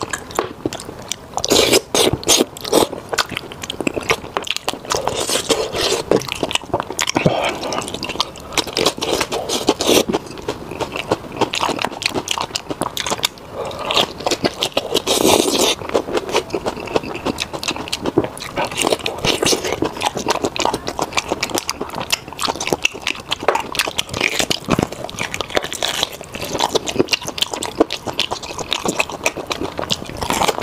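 Close-miked eating: wet chewing, sucking and lip-smacking as braised meat is bitten and pulled apart by hand, with a dense run of sticky clicks.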